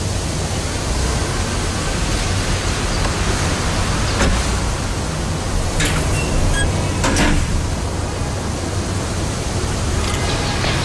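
A steady, loud hiss of even noise with no clear tone, with a few faint clicks about four, six and seven seconds in.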